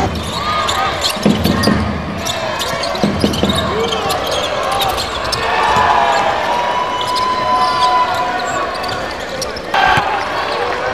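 Live basketball game sound: the ball bouncing on a hardwood court with repeated sharp knocks, shoes squeaking in short bursts, and players' and spectators' voices in a large hall.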